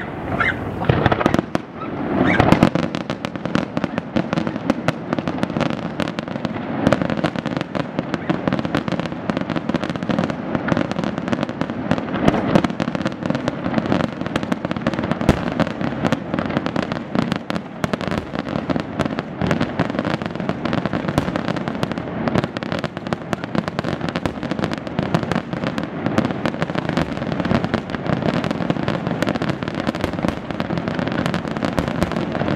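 Aerial fireworks display: a dense, unbroken barrage of shell bursts and crackling stars, many sharp reports a second.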